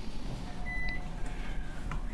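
A short, high electronic beep of about a third of a second, just under a second in, with a fainter lower tone alongside. A steady low hum and room noise lie beneath.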